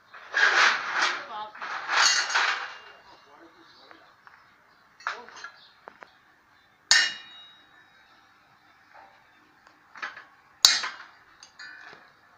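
Hammer blows on steel in a metal workshop: three sharp, separate metallic strikes, the middle one ringing on with a clear tone. Two louder noisy bursts come in the first three seconds.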